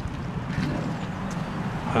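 Steady low hum of a vehicle engine running at idle.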